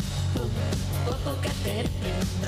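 Live pop-rock band music, an instrumental stretch with a steady bass line and a regular beat.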